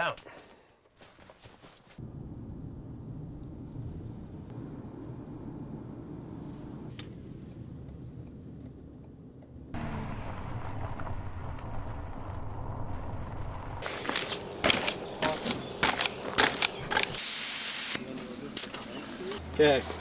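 Steady low road rumble inside a moving car, then louder, steady vehicle noise about ten seconds in. From about fourteen seconds come many clicks, knocks and rustles of gear being handled in a car's open boot, with a short hiss near the end.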